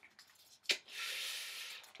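A small paper slip being unfolded by hand: a single click, then a soft rustling hiss lasting about a second.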